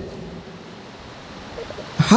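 Steady, even hiss of room noise with no clear event in it.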